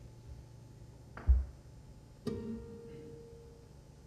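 A heavy low thump a little over a second in, the loudest sound, then a single plucked flamenco guitar note that rings out and fades over about a second and a half.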